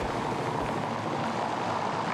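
A car driving past on a city street: steady road and tyre noise, with a couple of low thumps in the first second.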